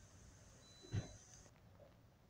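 A single short thump about a second in, over faint steady background noise.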